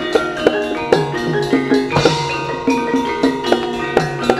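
Javanese gamelan ensemble playing: struck bronze metallophones and gongs ring out a repeating melody, with drum strokes several times a second.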